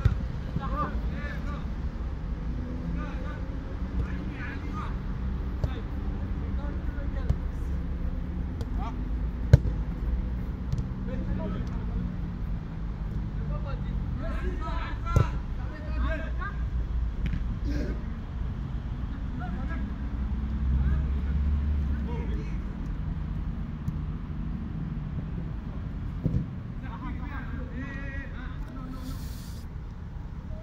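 Footballers shouting and calling to one another during a match, with a few sharp thuds of the ball being kicked, the clearest about ten and fifteen seconds in, over a steady low rumble.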